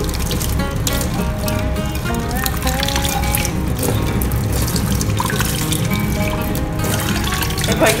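Kitchen tap running a weak stream of water over a frying pan in a stainless steel sink as it is rinsed by hand, under steady background music.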